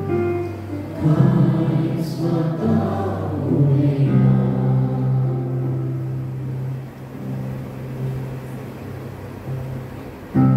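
Choir singing a slow Taizé chant in long held notes, growing quieter in the second half.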